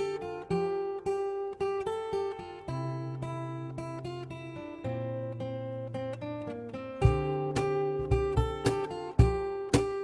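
Acoustic guitar playing the song's instrumental intro as a run of picked, ringing notes. About seven seconds in, low thumps on a steady beat join and the playing grows fuller.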